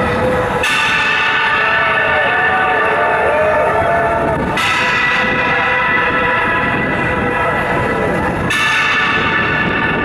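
Live rock band playing a slow song intro on synth keyboard and electric guitars: sustained, bell-like ringing chords that change about every four seconds, with a few gliding tones in the first half.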